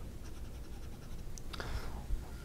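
Steel medium nib of a Lamy AL-Star fountain pen writing on paper: a faint, steady scratching of nib on paper.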